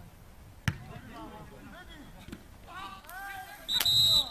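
A football kicked hard, one sharp thump about a second in, then players shouting, and a referee's whistle blast near the end, the loudest sound.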